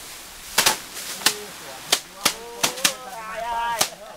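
Sheaves of cut rice beaten against a slatted pole threshing table to knock the grain from the stalks by hand. A series of sharp, irregular whacks, about eight in four seconds, from several people working at once.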